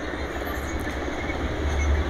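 Steady background noise: a low rumble with an even hiss over it, holding level throughout.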